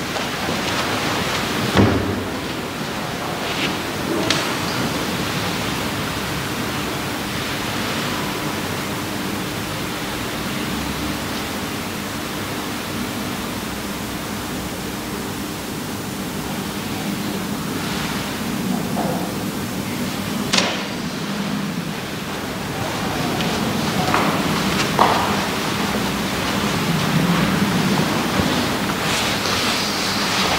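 A steady, even hiss with a faint low hum runs under a pause with no speech, broken by a few soft knocks.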